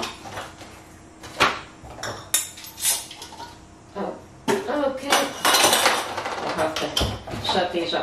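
Metal canning-jar screw bands and glass mason jars clinking as they are handled in a cardboard box: a few separate clinks in the first half, then a denser stretch of rattling and clatter.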